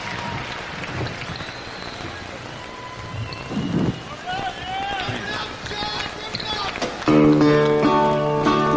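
Arena crowd applauding, cheering and whistling. About seven seconds in, a resonator guitar starts playing, loud and ringing, over the crowd.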